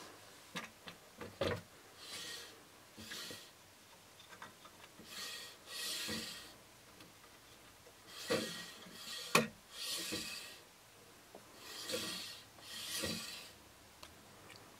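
The carriage of a Motion Slider 36" friction (non-bearing) camera slider is being pushed back and forth along its rail, a soft rubbing hiss with each stroke. There are about nine strokes, with a few sharp clicks between them.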